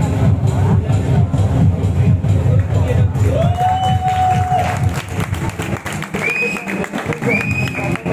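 Stadium PA music with a heavy beat over crowd noise, echoing around a large football stadium. Partway through the music drops back and a few held horn toots sound: one lower toot lasting about a second, then two shorter, higher ones near the end.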